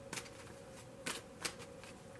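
A deck of cards being handled and shuffled: about four light, sharp card snaps or taps, two right at the start and two around the middle, over a quiet room.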